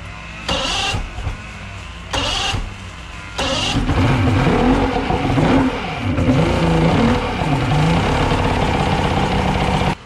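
Carbureted Mercury 200 two-stroke V6 outboard turning over in three short bursts about a second apart. It catches about three and a half seconds in and runs unevenly, revved up and down. This is a first start after long sitting, with fuel leaking from the carburetors past sticking floats and the water-pump impeller not pumping.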